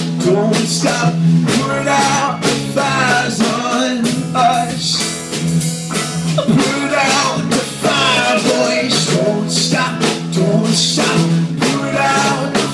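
A rock band playing live in a room: electric guitars over a steady drum beat, with a singer on a microphone.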